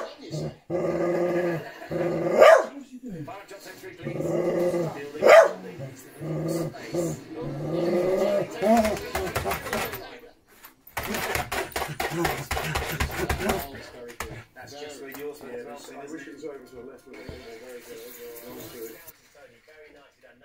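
A dog growling in play while wrestling a treat, with three sharp yaps in the first half. Then comes a couple of seconds of rustling and scraping on the floor covering, and after that it goes quieter as the dog settles.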